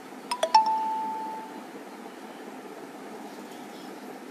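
A short chime: three quick notes, the last one ringing on and fading over about a second.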